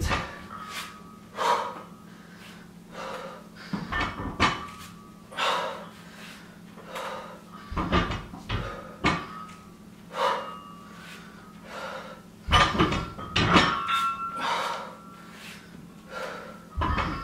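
Barbell deadlift repetitions: short knocks of the loaded barbell touching down on the mat, together with the lifter's hard breaths, about every second and a half, loudest near the end.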